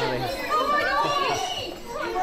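A group of children talking over one another, many young voices overlapping at once.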